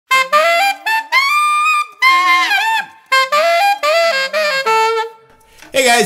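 Alto saxophone, a Selmer Mark VI, playing a bluesy R&B lick in three phrases of stepping and bending notes that climb into the altissimo register. The line ends on a held lower note that fades out about five seconds in.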